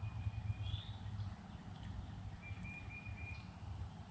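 Faint outdoor ambience: a bird's thin, high whistled notes, each held for about a second, with a short rising chirp about a second in, over a low rumble.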